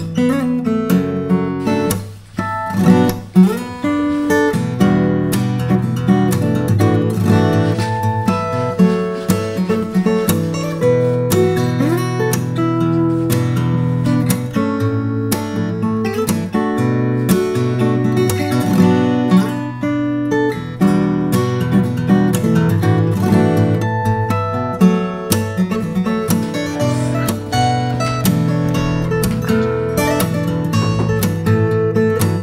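Headway HD-115 Urushi SF dreadnought acoustic guitar played solo, a continuous run of picked notes and chords.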